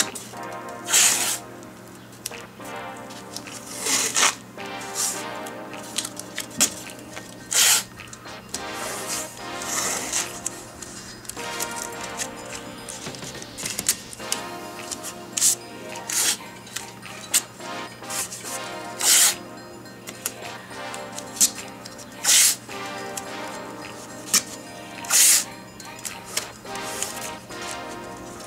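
Background music plays throughout. Over it, masking tape is pulled off its roll and torn in about ten short, loud ripping bursts at irregular intervals.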